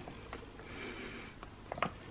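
A person sniffing at an opened foil pouch of powder: a soft, breathy inhale in the middle, followed by a few faint crinkles near the end.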